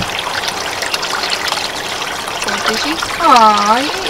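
Water from a garden pond's waterfall spillway pouring steadily onto the pond surface with a constant splashing trickle. Near the end a person's drawn-out vocal exclamation rises over it.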